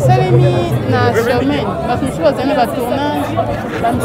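Speech: a woman talking into a handheld microphone, with other people chattering around her.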